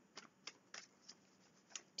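Near silence with four or five faint, short clicks spread through the pause.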